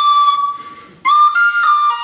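Tin whistle holding a long high note that fades away. After a brief gap about a second in, a new phrase begins with a run of changing notes.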